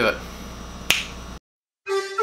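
A single finger snap about a second in, after which the sound cuts out briefly and steady bagpipe music with a held drone starts near the end.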